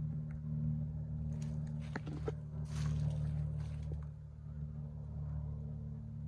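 A steady low hum of a running motor, with a few light clicks and a short rustle about two to three seconds in.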